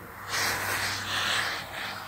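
Steam iron hissing as it pushes out steam while being pressed across pieced quilt fabric. The hiss starts about a third of a second in and runs steadily for just under two seconds.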